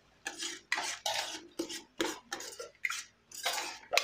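A metal spatula stirring and scraping thick curry paste around a pan, in repeated short strokes, about two or three a second.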